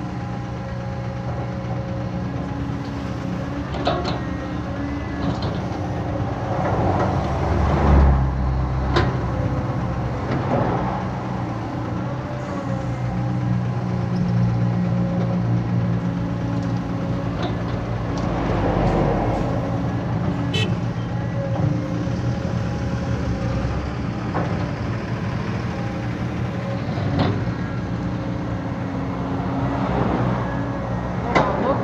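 Caterpillar hydraulic excavator's diesel engine running steadily, swelling at times under hydraulic load as it digs and swings buckets of soil into a dump truck. Several sharp knocks come from the bucket and falling earth.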